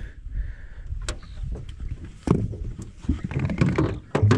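Knocks and bumps on an aluminium boat hull as people move about and handle gear, over a steady low rumble. The sharpest knocks come about one and two seconds in, with busier clattering near the end.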